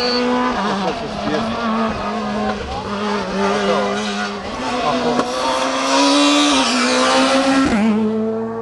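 Rally car engine running hard at speed on a stage, its note stepping down and climbing again several times as it changes gear, loudest about six seconds in. Spectators' voices are mixed in during the first half.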